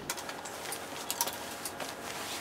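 Ankara print fabric rustling as it is gathered and turned by hand at a sewing machine, with scattered small clicks and ticks from the handling.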